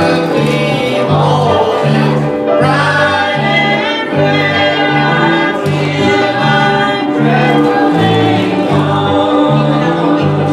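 Gospel song sung by a group of voices with instrumental backing, a bass part stepping from note to note about twice a second.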